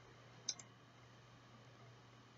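A computer mouse button clicked once, a short sharp click about half a second in; otherwise near silence.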